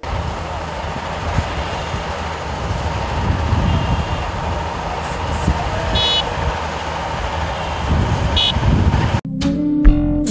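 Shantui crawler bulldozer's diesel engine running as it pushes earth, a steady low rumble with two short high-pitched toots, about six and eight and a half seconds in. Guitar music cuts in suddenly near the end.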